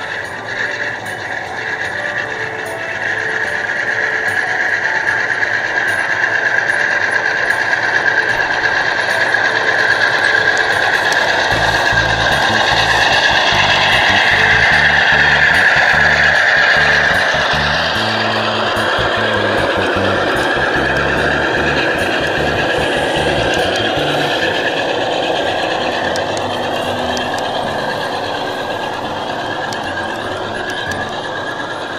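Large-scale model train with Santa Fe diesels running past on outdoor track, its wheels squealing steadily. A low rumble of wheels over the rail is loudest about halfway through as it passes close, then eases off.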